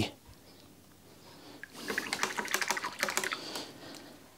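Quick light clicking and rattling of small objects handled on a painting table, starting a little before halfway and lasting about two seconds, as the brush is put down.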